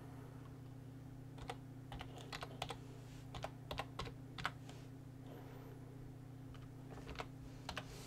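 Faint typing on a computer keyboard: irregular key clicks in two spells, from about a second and a half in to about four and a half seconds, and again near the end, over a steady low hum.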